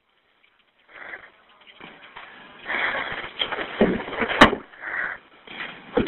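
Muffled noises and rustling on a 911 telephone line from the caller's end, with a single sharp click about four and a half seconds in.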